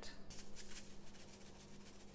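Sea salt dispensed from a container and falling onto sliced apples, a faint rapid crackle of fine ticks over a steady low hum.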